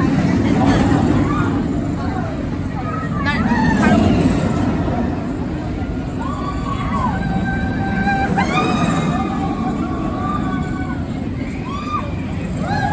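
Riders screaming on the Impulse roller coaster as its train runs the course, over a steady low rumble from the train. The screams rise sharply in the first few seconds, then come as two long held screams in the second half.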